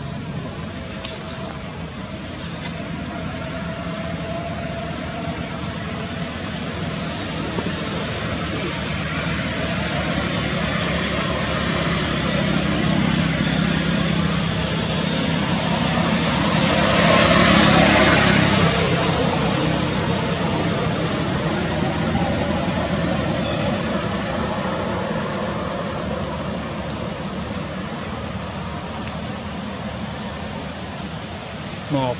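A motor vehicle's rushing noise, building slowly to its loudest a little past halfway through and then fading away, as it passes by.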